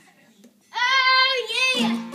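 A child singing one loud, high held note of about a second that wavers at its end, followed near the end by a plucked string chord ringing out.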